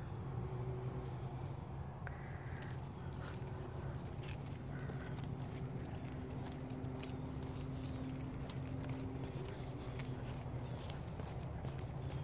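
Light metallic jingling and clicking from a dog's leash clip and harness hardware as she sniffs and walks, over a steady low background rumble.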